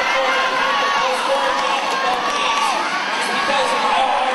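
Roller derby arena crowd cheering and shouting, many high voices yelling at once at a steady loud level.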